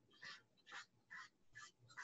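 Faint knife strokes chopping cucumber on a cutting board, about five even chops at roughly two a second.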